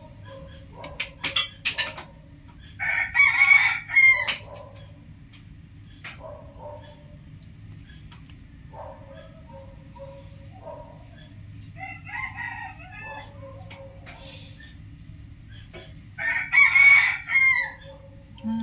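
A rooster crowing twice, a few seconds in and again near the end, with quieter calls in between.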